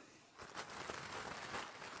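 Faint crinkling and rustling of a padded mailer envelope being handled and opened by hand, starting about half a second in.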